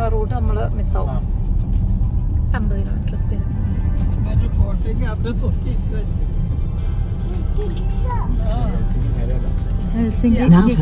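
Steady low road and engine rumble heard from inside a moving car's cabin at highway speed.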